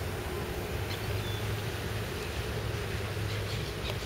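Steady outdoor background noise: a low hum under a soft even hiss, with no distinct event standing out.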